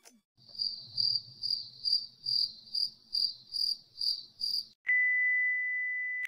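Crickets chirping, about ten evenly spaced chirps at roughly two a second, typical of an 'awkward silence' sound effect. They are followed near the end by a steady high-pitched test-pattern beep, the tone that goes with TV colour bars.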